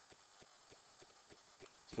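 Faint, light taps and scratches of a pen writing on paper, a few irregular clicks a second.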